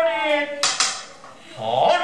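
A man's long chanted note of Iwami kagura recitation, sliding slightly down in pitch, ends about half a second in and is cut by a clash of small hand cymbals (tebyoshi) that rings briefly with a few quick strokes. The chanting starts again near the end.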